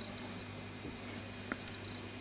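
Steady low electrical hum with a faint high whine above it, and one small click about one and a half seconds in as a clear plastic sticker wrapper is handled.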